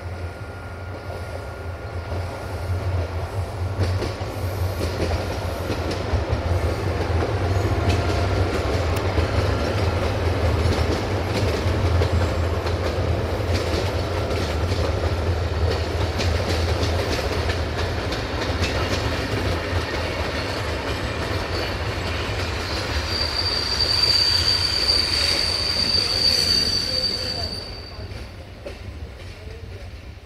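A locomotive-hauled passenger train rolls past, its steel wheels running over the rails with a steady rumble and irregular clacks at the rail joints. Near the end a high-pitched wheel squeal rises for a few seconds, then the noise falls away as the train clears.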